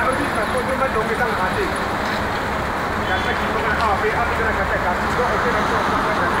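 Busy city street: a steady wash of road traffic with the voices of people talking nearby, and a low engine rumble swelling briefly in the middle.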